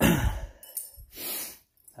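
Metal Swedish Army carbide lamp set down on a concrete floor: a sharp knock and clink at the start, then a softer scrape of handling about a second later.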